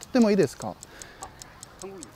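Clock-like ticking sound effect, an even run of light ticks about four a second, timing an on-screen countdown.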